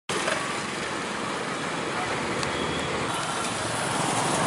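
Steady street ambience: road traffic noise with indistinct voices.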